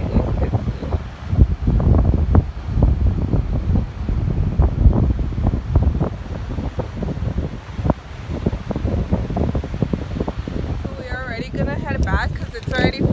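Wind buffeting the phone's microphone in irregular gusts, rising and falling in level. A person's voice starts near the end.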